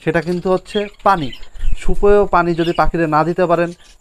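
A person talking over a colony of budgerigars chirping in the background.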